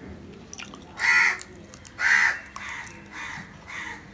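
Crow cawing: two loud caws about a second apart, followed by three fainter ones.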